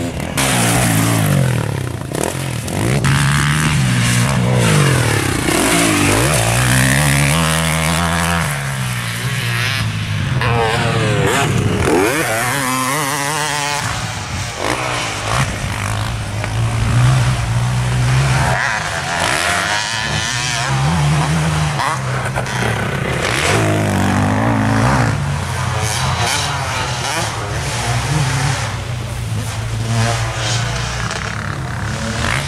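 Husqvarna FC 450 motocross bike's single-cylinder four-stroke engine revving up and dropping off over and over, its pitch climbing under throttle and falling each time it shuts off, as the bike accelerates out of corners and over jumps.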